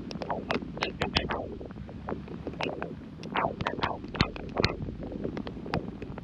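Heavy rain, with many close drops hitting sharply and irregularly, several a second, over a low wind-like rumble on the microphone.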